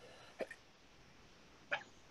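A person coughing twice, short and quiet, about a second and a half apart, over a video-call line.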